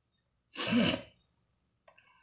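A man's single short, explosive burst of breath through the mouth and nose, under a second long, followed near the end by a faint click.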